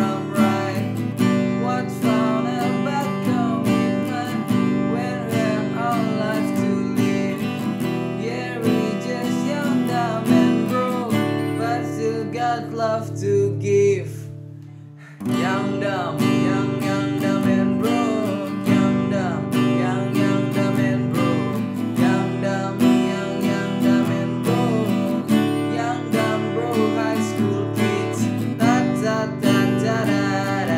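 Steel-string acoustic guitar, a Yamaha cutaway, strummed through G, Em and D chords in a down-down-up-up-down-down-down-up pattern, with a man singing along. About fourteen seconds in the strumming stops and one chord rings out and fades for about a second before the strumming picks up again.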